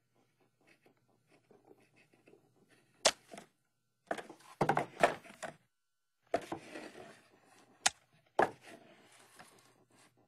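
Cartoon sound effects of a handheld stapler-like tool being clamped down onto a bullfrog: a sharp snap about three seconds in, then two bursts of crunching, tearing clacks, and two more single snaps near the end.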